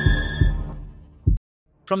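Intro soundtrack of deep heartbeat-like double thumps under a held high drone; the drone fades away, a last thump sounds, and after a brief silence a man's voice begins near the end.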